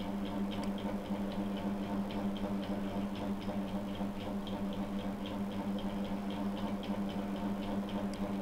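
Steady low hum with a fast, even ticking over it, about four to five ticks a second.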